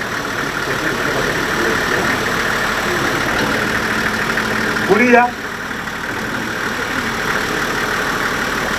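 School bus engine idling steadily during a roadworthiness inspection, with background voices and a short rising call about five seconds in.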